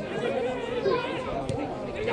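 Several men shouting and calling to one another across a football pitch, voices overlapping, with one sharp thump of a football being kicked about one and a half seconds in.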